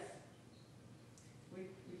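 Near silence: faint room tone between spoken words, with the tail of a word at the start and a voice coming back in near the end.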